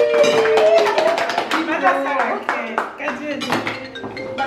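A group of people singing with hand claps: a long held sung note through the first second, then mixed voices over scattered clapping.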